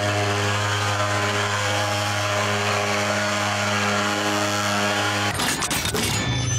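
Handheld pulse-jet thermal fogging machine running with a steady, loud buzzing drone as it sprays insecticide fog against mosquitoes. The drone stops abruptly just past five seconds in, giving way to a brief burst of noise.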